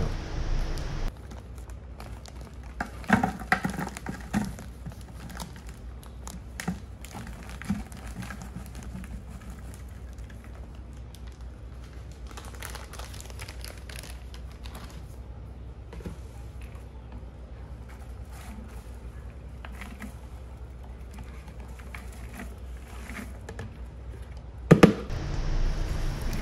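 Plastic bag of light brown sugar crinkling as it is handled and the sugar is poured into a clear plastic jar, with scattered light taps and patters over a low steady room hum. A louder rustle comes near the end.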